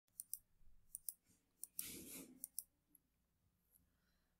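Faint computer-mouse clicks, about seven short sharp ones in the first two and a half seconds, with a brief soft rush of noise about two seconds in.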